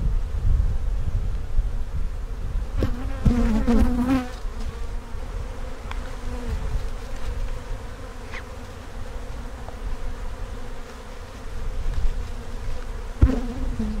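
Honey bee colony buzzing steadily from an opened hive, with louder passes of wavering pitch around three to four seconds in and again near the end. A few sharp knocks cut through the buzz.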